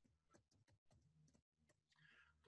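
Near silence with a scattering of very faint computer keyboard keystrokes as a word is typed.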